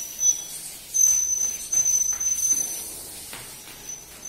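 A very high, steady whistle, held for a second or two, breaking off and starting again, as a line of schoolchildren play at being a train. A few soft knocks sound under it.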